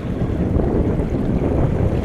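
Wind buffeting the microphone: a steady, fairly loud low rumble.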